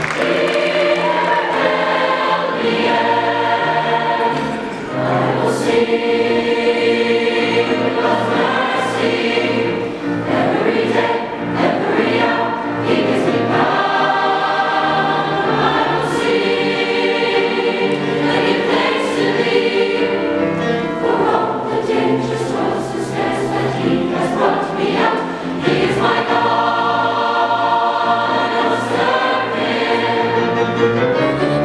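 A large mixed choir of male and female voices singing a sustained choral piece in full chords, phrase by phrase, with brief breaths between phrases about five and ten seconds in.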